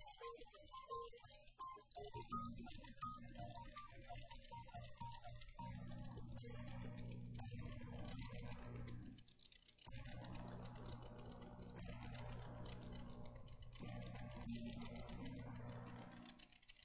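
Digital piano played softly: a line of separate notes, then held low chords, with a brief drop-off about nine seconds in.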